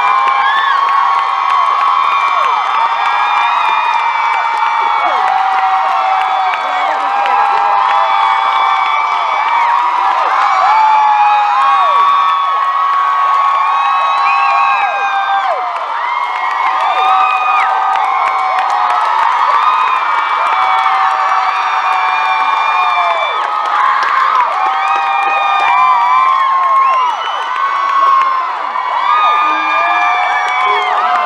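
A large crowd screaming and cheering without a break, many high-pitched voices holding long shrieks that overlap.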